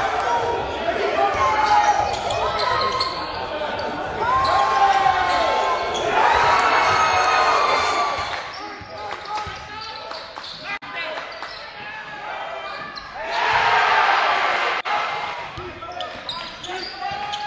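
Basketball game sound in a gym hall: spectators shouting and cheering, with the ball bouncing on the hardwood. The crowd swells louder twice, about six seconds in and again near the end.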